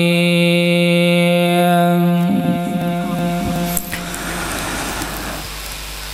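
A man's voice, amplified through a microphone, holding one long, steady chanted note at the close of an Arabic opening invocation. The note weakens after about two seconds and dies out near four seconds, with a click. Only a lower background hiss is left after that.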